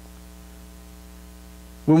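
Steady electrical mains hum, a low hum with a buzz of overtones, holding at an even level. A man's voice cuts in just before the end.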